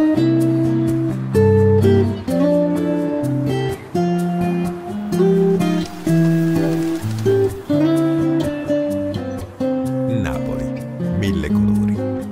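Music: a melody of held notes on plucked string instruments over a bass line, changing note every half second to a second.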